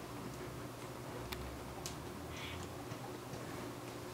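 Quiet room tone: a steady low hum with a few faint clicks at uneven intervals.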